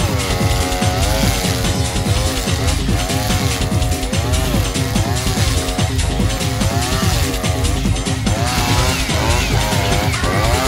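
Husqvarna 555RXT two-stroke brushcutter running hard through waist-high grass on 4 mm trimmer line, its pitch dipping and recovering about once a second as each swing loads the engine. Under load the engine gives off a whistling note.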